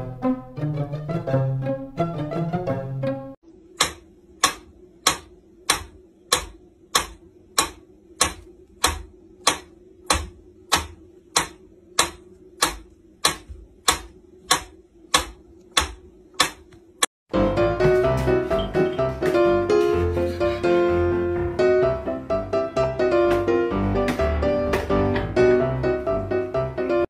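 Mechanical metronome ticking steadily, a little under two ticks a second, for about fourteen seconds. Background music plays before the ticking starts and again after it stops.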